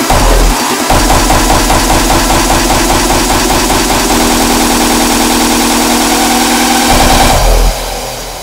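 Raw hardstyle track: heavy distorted kicks, then a drum roll that speeds up into a build-up over a held synth tone that steps up in pitch midway. It cuts off abruptly just before the end into a quieter break.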